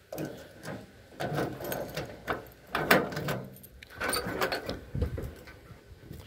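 Keys worked in the door lock of a 1984 Chevy C10 pickup and the door unlatched and swung open: a series of metallic clicks and rattles.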